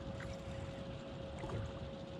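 Bass boat's electric trolling motor running with a thin, steady whine over a low rumble, with a few faint ticks as the fish is fought on the rod.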